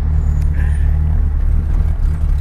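Turbocharged car engine running at steady revs, heard from inside the cabin as a low, even drone.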